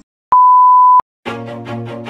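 A loud, steady electronic beep, one pure tone lasting under a second and cutting off sharply. After a brief silence, music begins about a second in.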